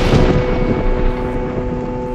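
A held drone chord of several steady tones in the film's score, with a wash of rain-like noise that fades over the first second; a higher tone joins about a second in.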